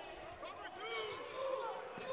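Faint basketball court sounds: sneakers squeaking on the hardwood floor and players calling out, with a ball being dribbled.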